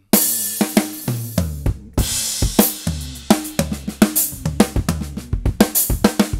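Tama Starclassic drum kit with Zildjian cymbals played in a busy funk groove built on diddles, the hands open, with ringing tom strokes, snare accents, bass drum and cymbals, several strokes a second. It starts with a loud hit just after the opening.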